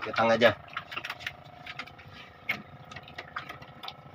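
Scattered light clicks and knocks of handling over a steady hum, with one sharper knock about two and a half seconds in.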